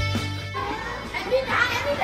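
Background music that stops about half a second in, followed by children's voices talking and calling out.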